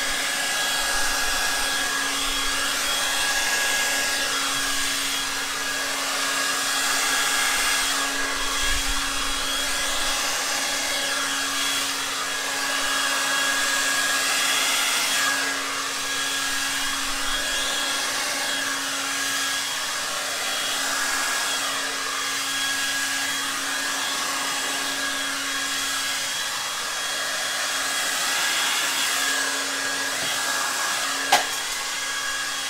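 VS Sassoon Pro-Dry 2300 hair dryer running steadily: a constant rush of air over a steady motor hum, its level swelling and easing slightly as it is moved over the canvas.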